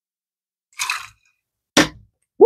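Two brief bar-work sounds: a short splash as a jigger of scotch is tipped into a metal cocktail shaker tin, then a sharp knock, the louder of the two, near the end.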